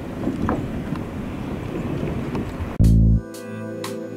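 Wind buffeting the microphone outdoors, then background music cuts in abruptly near the end with loud deep bass notes and a steady beat.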